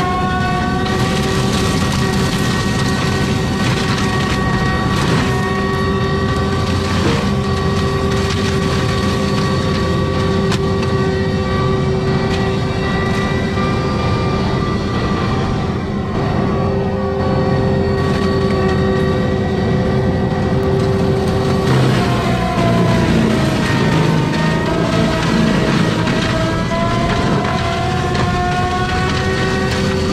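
ASV RT-120F compact track loader driving a Prinoth M450s forestry mulcher head through brush: a steady whine from the spinning drum and engine, with scattered crunches as it chews wood. About two-thirds of the way through, the pitch sags and climbs back as the drum takes a heavier load.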